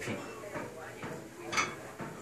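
Cable functional trainer worked through a rep: the weight stack and cable sliding through the pulley, with a short sharp noise about one and a half seconds in.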